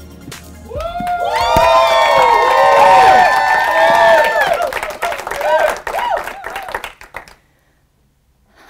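Audience cheering and whooping with many voices at once, then clapping that thins out and stops about seven seconds in. The end of the intro music is heard briefly at the start.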